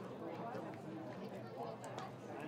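Crowd of spectators chatting in the stands of a ballpark, many voices overlapping at a low, even level.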